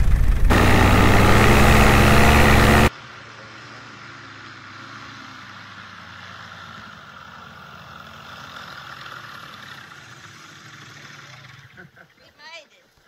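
Tandem paramotor trike's engine running loud with rushing air on the onboard camera, cutting off abruptly about three seconds in. After that the trike is heard from farther off: its engine runs quietly at low power as it rolls across the grass after landing.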